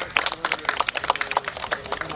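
A small crowd clapping by hand: many quick, uneven claps with no common beat, with faint voices underneath.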